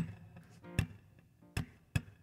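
Acoustic guitar playing the song's intro: sharp, percussive strums about every 0.8 s, each chord ringing briefly. The first strum, at the very start, is the loudest.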